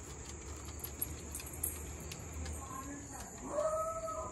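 A beagle gives a short, high whine near the end, over a steady high-pitched drone.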